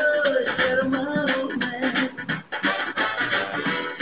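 Music playing: a melody line over a steady beat, with a brief drop in loudness about two and a half seconds in.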